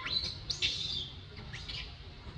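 A few short, high-pitched calls: one sliding up in pitch at the start, a louder one about half a second in, and two brief ones near the end.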